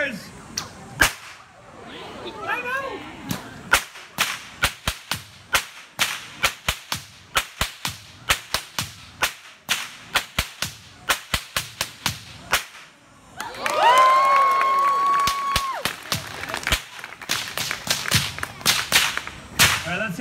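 A whip cracking over and over in a fast run of sharp cracks, about two to three a second, with a short break a little past the middle. Just after the break a person holds a long high yell for about two seconds over the cracking.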